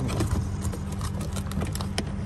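Plastic clips of a Honda Accord's driver's-door power window switch panel clicking as the panel is pried up out of the door trim by hand: several small clicks, with a sharper one near the end. A steady low hum runs underneath, typical of the car idling.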